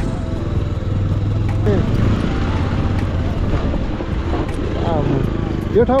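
Motorcycle engine running steadily while under way on a dirt road, heard from the rider's seat together with road and wind noise.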